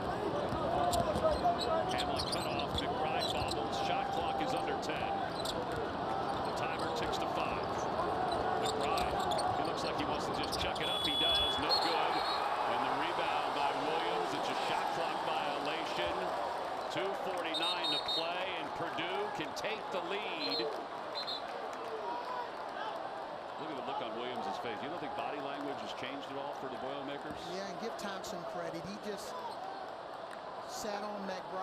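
Live court sound from a basketball game: a ball being dribbled on a hardwood floor, with players and coaches calling out.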